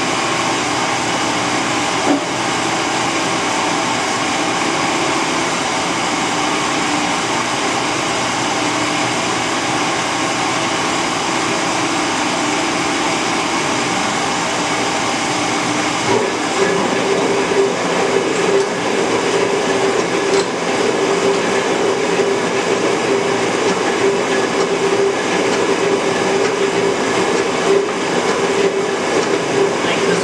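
Metal shaper running steadily. About halfway through, after a lever on the machine is worked, it gets louder and takes on a steady hum with a rough, fluttering rattle.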